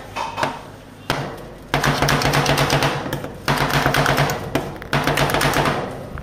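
Two steel spatulas rapidly chopping dragon fruit into rolled ice cream base on a stainless steel cold plate: a fast clatter of blade edges striking the metal plate. It comes in two long runs with a brief pause between them.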